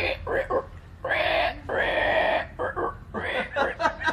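Men's voices: short bursts of unclear talk, with two longer, breathy drawn-out vocal sounds between about one and two and a half seconds in.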